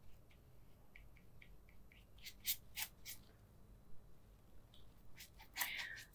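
Faint, scattered scratches and light clicks of a wet paintbrush stroking textured watercolour paper as the paper is wetted, a few sharper ticks about halfway through and near the end.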